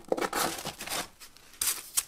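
Sanding discs rustling and scraping against each other as a stack is gathered up by hand, in two bursts with a quieter gap just past a second in.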